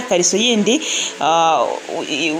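Speech only: a woman's voice talking steadily in Kinyarwanda.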